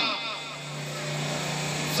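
A steady low hum fills a pause in the singing, with the last sung note fading out just after the start.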